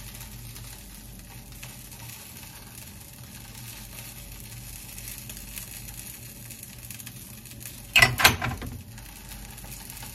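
Food frying in a pan, a steady sizzle, with a brief clatter of handling about eight seconds in.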